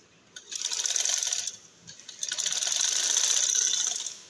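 Domestic sewing machine stitching fabric in two runs: a short burst of rapid needle-stroke clatter about half a second in, then after a brief pause a longer run that starts about two seconds in.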